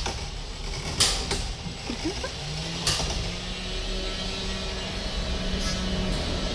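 Small electric combat robots fighting, their motors whirring. A sharp knock comes about a second in and another near three seconds. A motor tone rises about two and a half seconds in and then holds steady.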